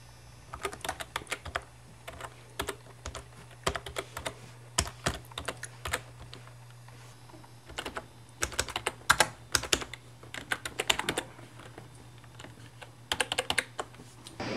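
Typing on a computer keyboard: quick runs of keystroke clicks in short bursts with brief pauses between them, over a steady low hum.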